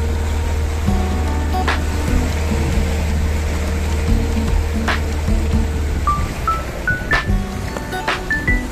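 Background music with short melodic notes and occasional sharp hits, over the steady drone of a boat engine that drops away about six seconds in.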